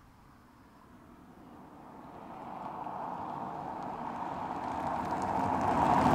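A car approaching, its road and tyre noise rising steadily out of near silence to its loudest near the end, as in a drive-by.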